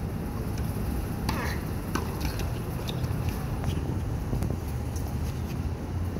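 A tennis rally on a hard court: several faint, sharp racket-on-ball hits spaced through the point, under a steady low rumble.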